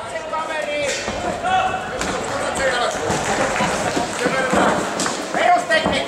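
Kickboxing blows landing: several dull thuds of gloves and kicks striking, spread about a second apart, over continuous shouting and chatter from voices around the ring.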